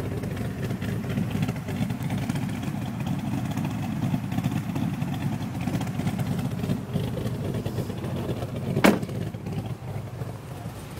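SS wagon's V8 engine idling steadily, a low rumble, with a single sharp click about nine seconds in.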